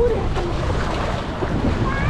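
Sea water washing and splashing in a rock pool as a wave spills over the rock ledge, with wind buffeting the microphone as a low rumble.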